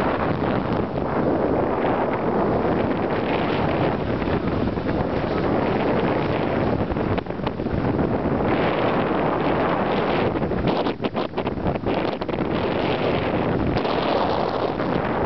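Wind buffeting the microphone over the rush of water at the bow of a moving catamaran: a loud, steady noise that drops out briefly a few times about three quarters of the way through.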